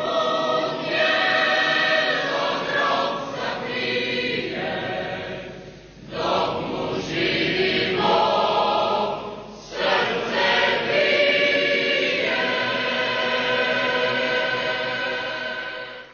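A choir singing long, held chords in slow phrases, with short breaks about six and ten seconds in, fading out at the end.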